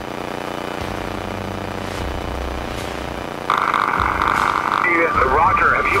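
Steady drone of the Beechcraft Bonanza's piston engine heard in the cockpit. About three and a half seconds in, HF radio static cuts in abruptly, and near the end a controller's garbled voice starts coming through it.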